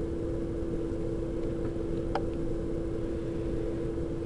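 Steady background hum with a constant tone and an even hiss, with one faint click about two seconds in.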